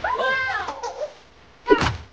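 A young child's high-pitched voice in a drawn-out, wavering cry or shout, during taekwondo sparring. It opens with a sharp sound, and a second short, loud sharp sound comes near the end.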